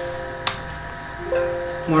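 A man's voice twice holds a flat, drawn-out hesitation sound, a steady hum-like 'uhh', with a single sharp key click about half a second in.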